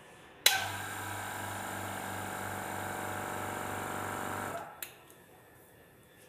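A small electric motor in a piece of lab equipment is switched on with a sharp click about half a second in. It runs with a steady hum for about four seconds, then stops, and a short click follows.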